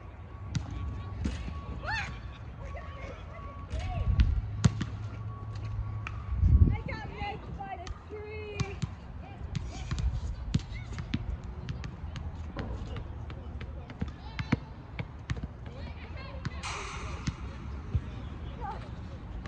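Soccer ball being kicked and bouncing on grass: a string of irregular thuds scattered through the play, over a steady low background rumble.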